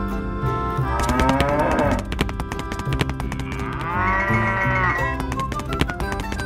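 Cows mooing twice, each a long call, one about a second in and one around four seconds in, over background music with a steady beat.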